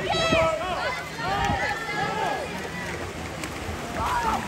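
Several voices shouting and calling out at once, their pitches rising and falling, over the splashing of swimmers racing through the water.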